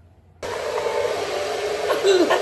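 Handheld hair dryer blowing, starting suddenly about half a second in and then running at a steady pitch.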